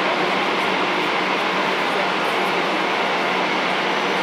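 Jet engines of an Airbus A320-family airliner at taxi power, giving a steady, even rush with a faint low hum underneath.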